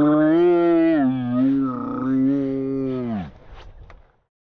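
A man's voice holding one long, drawn-out low note, like a mock moo, that steps down in pitch about a second in, then slides down and stops a little after three seconds.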